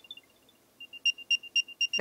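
Apple AirTag's built-in speaker playing its locating sound: a rapid run of short, high-pitched beeps starting about a second in. It is the alert that leads someone to a hidden AirTag that is tracking them.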